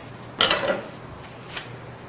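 Metal craft scissors set down on a wooden table: a short clatter of clicks about half a second in, then a single light click about a second later.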